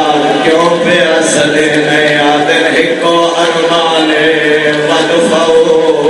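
A man chanting a mournful Muharram lament in long, drawn-out held notes, one voice carrying a slow melody.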